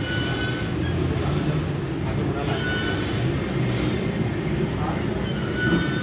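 Pec deck chest-fly machine squeaking briefly as the arms swing through repetitions, about every two to three seconds, over a steady low rumble of gym noise.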